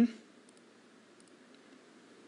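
Quiet studio room tone with a few faint, scattered clicks from a computer mouse or keyboard being worked.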